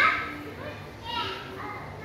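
A toddler's high-pitched vocalising without clear words: a loud squeal right at the start and a shorter call about a second in.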